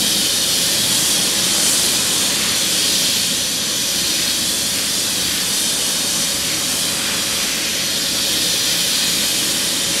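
Hand spray gun spraying A1 acrylic composite with accelerator, a steady loud hiss of atomising compressed air, with a faint steady tone underneath.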